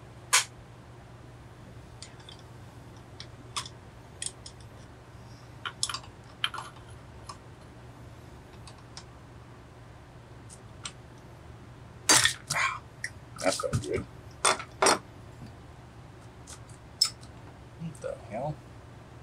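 Metal tools and parts clinking and clicking against a Homelite Super XL chainsaw as it is taken apart on a workbench, in scattered single knocks with a quick flurry of clinks about two-thirds of the way through. A steady low hum runs underneath.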